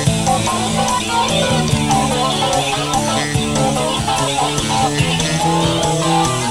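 A rock band playing live in an instrumental passage: electric guitars over bass guitar, with a steady beat.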